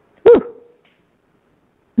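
One brief voiced sound about a quarter second in, short and pitched, rising then falling, over otherwise near-silent room tone.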